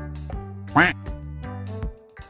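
Background music with a steady low bass line, and a single short squeaky quack about a second in, the loudest sound.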